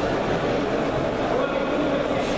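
Steady hubbub of many voices echoing in a large sports hall, spectators and coaches talking and calling out at once.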